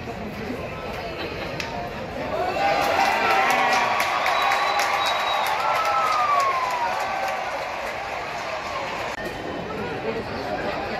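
Baseball stadium crowd cheering and shouting at a ball put in play. The cheer swells about two seconds in, holds for a few seconds and then dies down.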